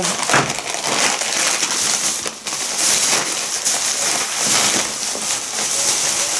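Plastic packaging crinkling and rustling steadily as purchases are rummaged through and a pack of clear polyethylene bags is pulled out.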